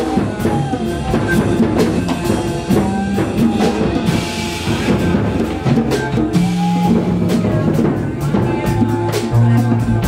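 Live band music: a bowed string instrument plays sliding melody notes over tabla, drum kit and a low bass line, with a cymbal wash about midway.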